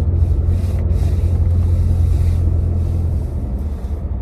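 Steady low rumble of engine and road noise inside a Honda car's cabin while it is being driven.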